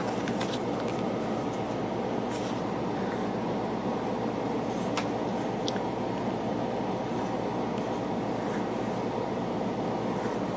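Steady room noise, a low hum under an even hiss, with a few faint clicks.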